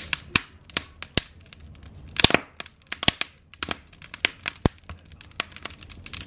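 Wood fire in a fireplace crackling, with irregular sharp pops from the burning logs; the loudest pop comes about two seconds in.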